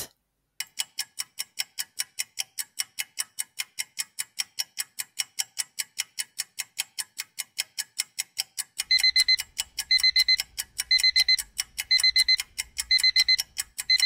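Countdown timer sound effect: a clock ticking about four times a second, joined about nine seconds in by alarm-clock beeping in short bursts about once a second as the time runs out.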